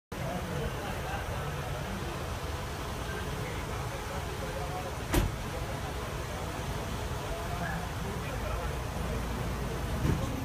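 A convoy of black passenger vans and SUVs driving slowly past, giving a steady low rumble of engines and tyres. One sharp knock sounds about five seconds in.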